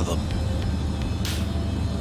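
Documentary background music, a steady low drone, with a short hiss about halfway through.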